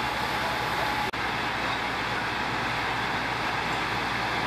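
Steady rushing noise of a building fire being fought with hoses, with a low engine-like rumble beneath; the sound cuts out briefly about a second in.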